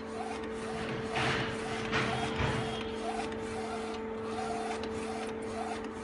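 Flatbed UV printer printing: a steady hum while the printhead carriage shuttles back and forth. Short chirps come about twice a second, with two louder swishes in the first half.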